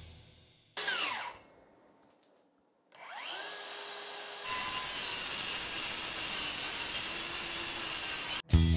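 DeWalt DCS573 brushless cordless circular saw: its blade winds down briefly with a falling whine as the electric brake stops it. After a pause the motor spins up with a rising whine and runs free. About four and a half seconds in it begins cutting steadily through stacked boards.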